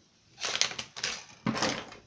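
Three short bursts of rustling, scraping handling noise close to the microphone.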